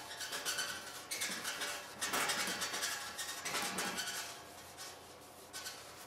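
A cloth shop rag being rubbed back and forth over a flexographic plate cylinder, cleaning it with alcohol: a series of swishing wiping strokes that fade out after about four and a half seconds.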